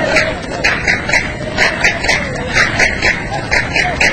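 Steady rhythmic hand clapping by a group of men, with chanting voices faintly underneath.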